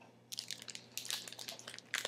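Clear plastic wrapper crinkling as it is handled, a run of quick, irregular crackles starting a moment in.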